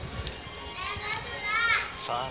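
A young child's high-pitched voice calling out for about a second, starting about a second in, over background music.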